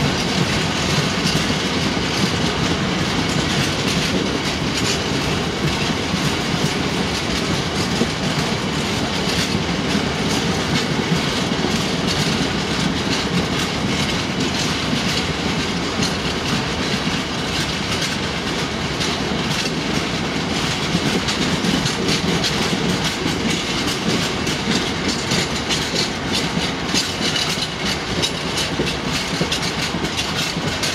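A long rake of bogie bulk-powder tank wagons rolling past close by: a steady rolling noise of steel wheels on rail, with a dense, continuous clickety-clack of wheels crossing rail joints.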